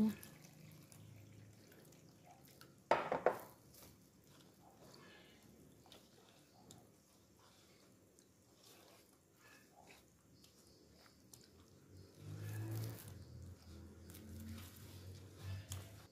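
Water poured into a stainless steel bowl of tapioca starch and rice flour, then the wet flour being mixed by hand into a batter, mostly faint. A short sharp knock about three seconds in.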